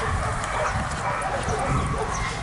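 Dog barking, with a voice saying "love you" at the start.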